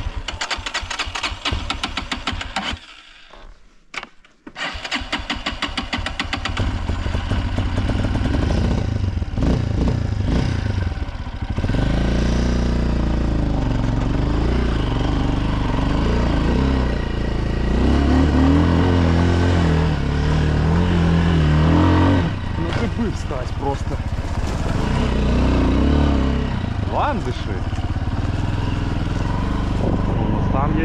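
Minsk X250 dirt bike's single-cylinder engine. It runs with fast, even firing, goes nearly quiet for a second or so about three seconds in, then runs again loudly, revving up and down as the bike is ridden uphill over a rough forest track.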